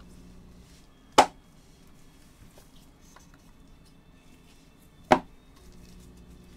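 Two sharp knocks about four seconds apart as a cardboard trading-card box is handled with gloved hands on a tabletop, with faint handling clicks between them.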